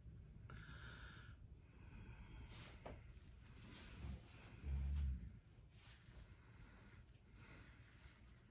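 A very quiet room with a soft breath early on and a single short, deep thump about five seconds in.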